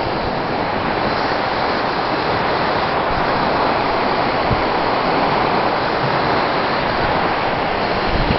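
Steady rushing of a fast-flowing river running high.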